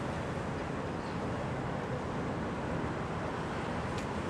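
Steady outdoor background noise, an even rushing hiss with no distinct events.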